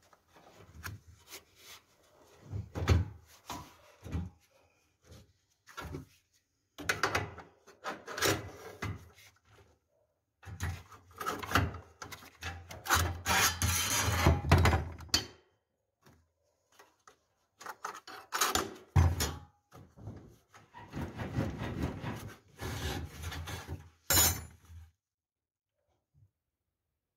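Metal roller-shutter hardware being handled as a bracket is hooked onto the spring pulley's crossbar: irregular scraping and rubbing with sharp knocks, in bursts with short pauses.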